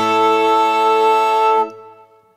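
Irish folk band with fiddle holding one final sustained chord to end a tune; the sound breaks off about one and a half seconds in and rings away to silence.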